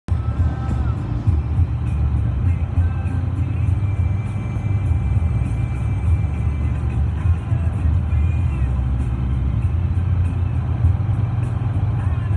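Music with a steady beat and a melodic line over the low, steady rumble of a car driving at highway speed, heard from inside the cabin.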